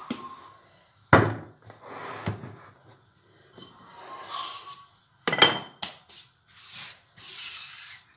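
Long wooden rolling pin rolling out flatbread dough on a kitchen counter, with wooden knocks and rubbing and scraping noises. There is a sharp knock about a second in and a few lighter knocks later. Near the end comes the rub of a hand wiping flour off the counter.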